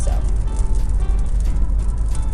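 Steady low rumble of a moving car heard from inside the cabin, with music playing underneath.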